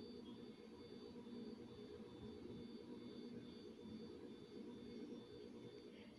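Near silence: faint steady room tone with a low electrical hum.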